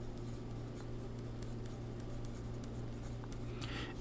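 Pencil writing on paper: faint, quick scratching strokes as words are written out, over a steady low hum.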